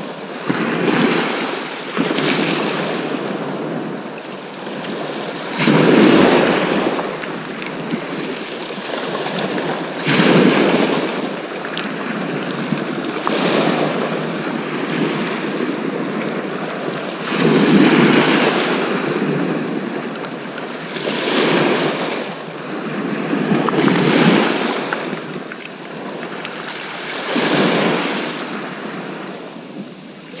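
Sea waves breaking on the shore, a swell of surf noise every three to four seconds, with some wind on the microphone.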